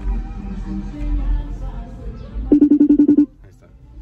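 Background music over the low rumble of the car, then a short, loud, rapidly pulsing electronic tone, about ten pulses in under a second, from a FaceTime video call ringing on the phone. The tone cuts off suddenly and it goes quieter.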